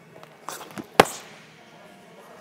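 A boxing glove landing a punch on a focus mitt: one sharp smack about a second in, preceded by a softer scuff half a second earlier.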